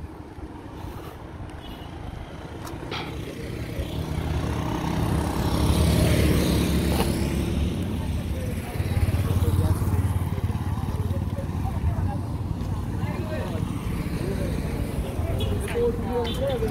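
Road traffic on a paved street: a vehicle's engine and tyre noise swell as it passes about five to seven seconds in, followed by more engine rumble around nine to ten seconds.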